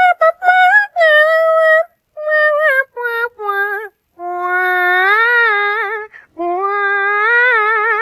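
A high-pitched voice singing a melody in several short phrases with brief pauses between them; the two longer phrases in the second half are held notes whose pitch wavers.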